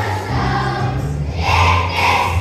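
A choir of second-grade children singing a song together in unison, with sustained instrumental accompaniment underneath.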